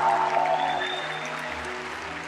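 A large audience applauding, over steady instrumental background music.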